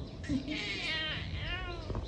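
Young baby cooing and squealing with delight: a few short, high-pitched calls that rise and fall.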